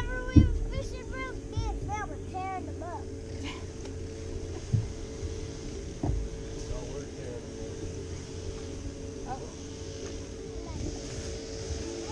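Steady hum of a bass boat's electric trolling motor, with a few sharp knocks on the boat and a run of short, quick high calls in the first three seconds.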